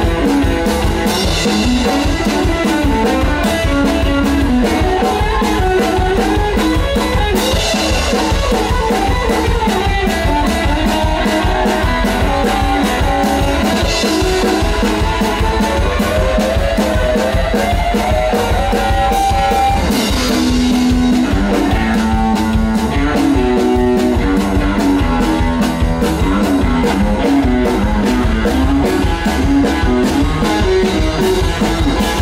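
Rockabilly band playing an instrumental passage: a steady drum-kit beat under a moving guitar line, with a cymbal crash about every six or seven seconds.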